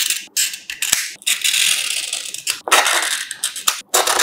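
A knife blade scraping and scratching across the plastic layer of a smartphone's camera module. Several short scratches and taps are followed by two longer scrapes in the middle.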